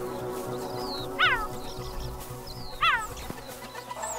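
Two short calls falling in pitch, about one and a half seconds apart, from banded mongooses, over background music with held notes.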